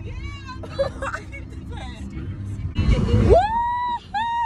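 A woman's voice singing loudly in a moving car, swooping up near the end into a long high held note, over the car's low road rumble.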